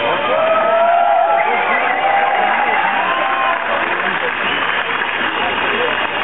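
A crowd cheering and shouting, many voices overlapping, with several long held yells standing out over the din.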